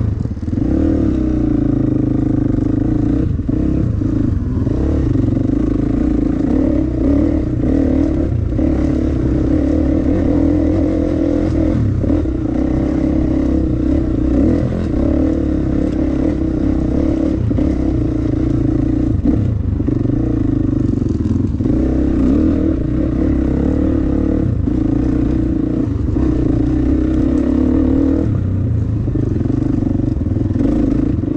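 Dirt bike engine running at a fairly steady pace along a rough trail, its note dipping briefly every few seconds, with occasional knocks from the bike over the ground.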